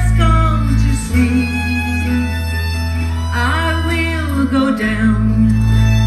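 Live acoustic country-folk band playing: strummed acoustic guitar and mandolin over sustained bass notes, with singing. The bass changes note about a second in and again near five seconds.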